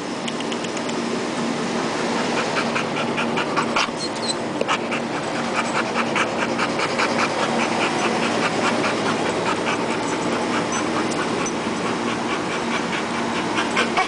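Young blue-nose pit bull panting hard and rhythmically, about four breaths a second, with a steady low hum underneath.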